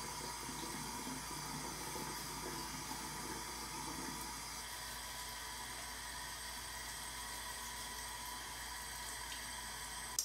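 Bathroom sink tap running in a steady stream while a beard is washed.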